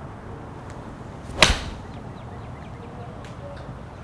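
A TaylorMade seven iron striking a golf ball off a range hitting mat: one sharp crack about a second and a half in, over faint outdoor background.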